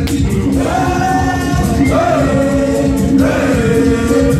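Music with a group of voices singing held phrases over a busy, steady rhythm.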